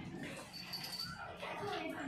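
People talking in the background, with a brief high thin whine a little under a second in.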